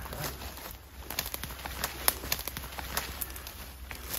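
Footsteps through forest undergrowth: an irregular crackle of dry leaves and twigs underfoot, with one sharper snap about two seconds in.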